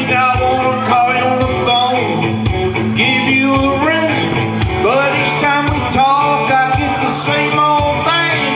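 Country song with a man singing into a handheld microphone over guitar accompaniment and a steady beat.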